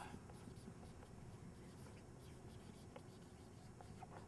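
Near silence in a small room, with faint writing sounds and a few light ticks.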